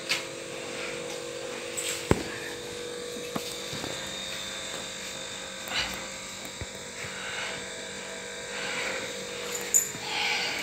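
A steady low hum runs under a few light clicks and knocks, the sound of objects being set down and arranged in a plastic bucket.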